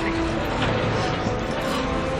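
Steady rumble of a spacecraft in flight, heard from inside its cabin as a film sound effect, mixed with dramatic music.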